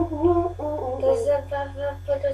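A girl humming a tune in short held notes that step up and down in pitch.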